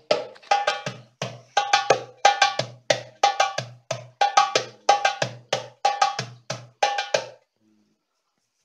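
Darbuka (goblet drum) played with the hands: a repeating rhythm of deep, ringing bass strokes mixed with sharp, quick rim strokes, about three strokes a second, stopping shortly before the end.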